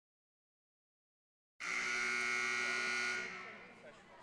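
Silence, then a gymnasium scoreboard buzzer comes in suddenly with one steady, buzzy tone held for about a second and a half, fading away in the gym's echo.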